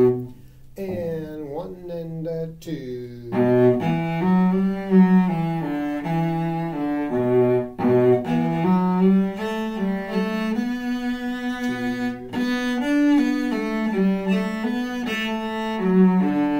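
Solo cello playing a bowed melody in held notes of about half a second to a second each, with a short break just after the start and a few sliding pitches before the line settles back into steady notes.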